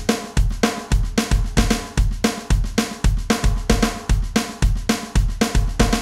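Electronic drum kit playing a train beat: a fast, even single-stroke roll on the snare with accented backbeats, over a bass drum pattern. It stops at the very end with a short ring-out.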